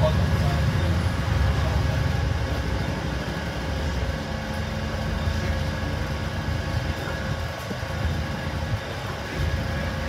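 Engine and road noise heard from inside a moving double-decker bus: a continuous low drone that eases about three to four seconds in, leaving a steadier hum.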